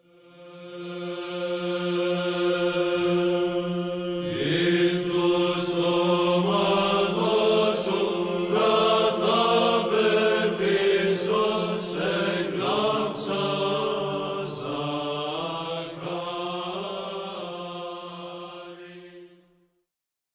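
Closing music of chanting voices over a sustained drone note: the drone sounds alone for about four seconds, then a melody with moving pitch comes in over it, and the music fades out just before the end.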